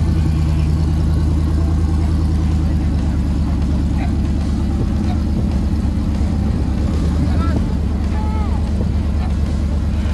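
Engine of a tube-frame off-road rock-crawler buggy running steadily as it crawls over a rocky obstacle, with crowd voices in the background.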